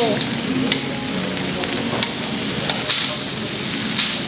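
Marinated beef sizzling steadily on a tabletop Korean barbecue grill, with a few sharp clicks of metal tongs against the grill, the loudest about three seconds in.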